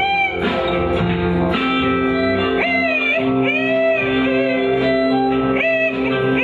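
Live band music: a man singing over a strummed electric guitar, with a didgeridoo's steady drone held underneath.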